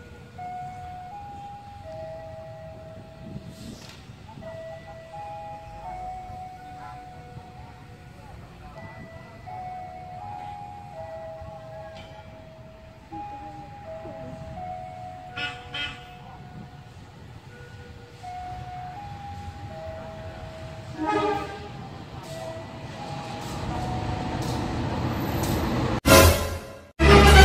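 A simple melody of clear single notes plays over a low rumble. There is a short loud burst about 21 seconds in, and a rising noise builds near the end.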